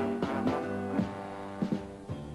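Light orchestra playing the instrumental introduction to a medley of 1940s Italian popular songs: sustained chords with rhythmic accents, before the vocals come in.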